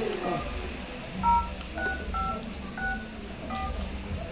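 Telephone keypad tones as a number is dialled: about seven short two-tone beeps at an uneven pace.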